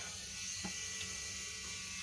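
Pen-style tattoo machine running with a steady electric buzz.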